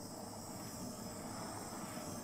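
Small handheld butane torch running with a steady hiss.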